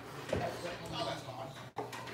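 Faint background chatter of several people talking in a room, with no single clear voice. There is a momentary drop-out of all sound near the end.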